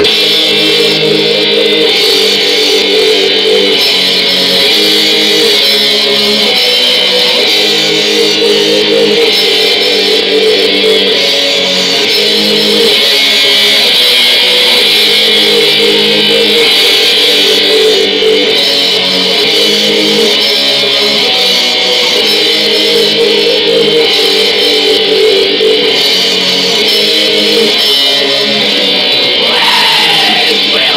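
Black metal band playing live: distorted electric guitars hold sustained chords that change every second or two, at a steady loud level.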